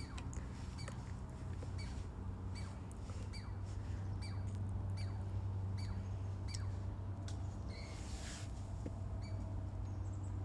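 A chipmunk chirping, a steady series of short, sharp high chirps a little under two a second, over a low steady hum.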